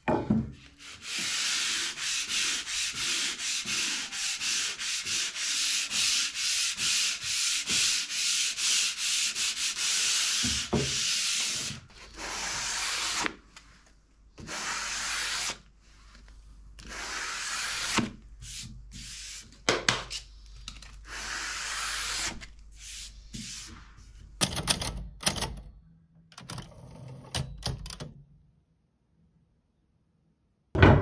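Coarse sandpaper rubbed by hand over the planed face of a wooden board. Brisk, even back-and-forth strokes come about three or four a second for the first twelve seconds or so, then shorter, irregular strokes with pauses. The board is being scuffed up to open the grain, taking off the plane's burnishing and any wax so that glue can soak in.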